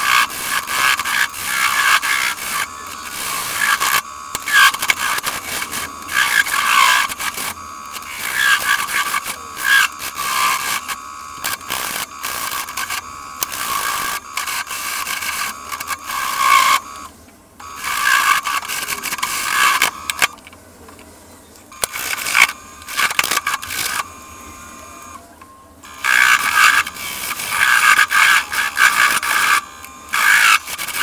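Parting tool cutting into a spinning sycamore log on a wood lathe, flattening its curved end: a scraping cut that comes in uneven surges. There is a quieter spell about two-thirds of the way through, while the lathe keeps turning.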